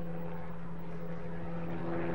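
A steady low drone held at one unchanging pitch.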